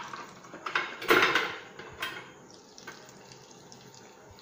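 Batter-coated boiled eggs deep-frying in hot oil: a loud burst of sizzling about a second in as another battered egg goes into the oil, easing to a softer, steady sizzle.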